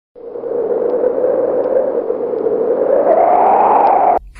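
Channel-intro sound effect: a loud, hazy drone that rises slowly in pitch, with faint ticks about every three-quarters of a second. It cuts off suddenly at the end.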